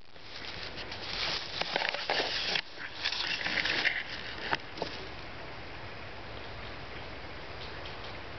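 Rustling and scraping of wooden sticks being handled and fitted onto a stick-frame table, busy with a few sharp clicks for about the first four and a half seconds, then only a steady hiss.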